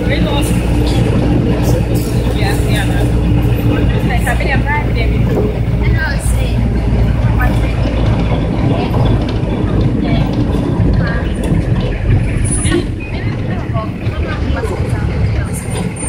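Trotro minibus engine droning with road noise, heard from inside the moving cabin, under passengers' chatter.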